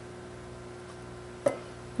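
A single short knock of a spatula or can against a ceramic bowl about one and a half seconds in, over a steady low room hum.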